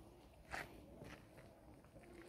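Near silence: quiet outdoor background with one faint, brief scuff about half a second in.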